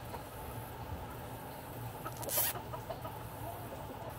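Domestic hens clucking softly, with a short, high rustle a little past halfway.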